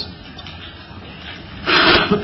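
Low room tone, then near the end a short, loud rubbing noise lasting about a third of a second.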